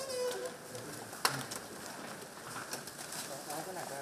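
Faint voices of people talking in the background, with a single sharp click about a second in.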